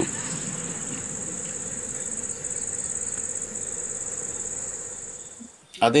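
Crickets trilling steadily in a continuous high-pitched chorus, fading away about five seconds in.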